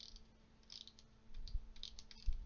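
Correction tape dispenser run across paper in a few short, faint strokes, its roller clicking and scraping as it tapes over handwriting.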